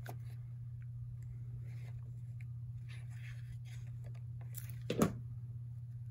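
Quiet handling of paper card pieces and a liquid glue bottle on a craft table: faint rustles, then a single sharp knock about five seconds in, over a steady low hum.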